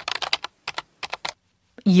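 Typing on a computer keyboard: a quick run of keystrokes lasting about a second and a half, then it stops.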